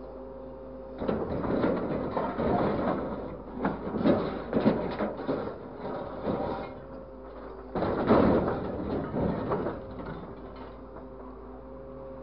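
Orange-peel grab of a scrap-handling grapple truck working in a steel bin of scrap metal: two long spells of clattering, scraping metal, starting about a second in and again near eight seconds, over the steady hum of the running machine.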